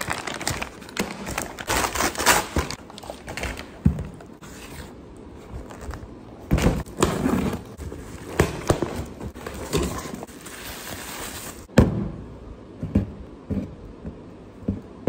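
Brown paper packaging being cut with scissors and torn open, crinkling and rustling, then a cardboard box being handled and pulled open, with several dull thumps and one sharp knock near the end.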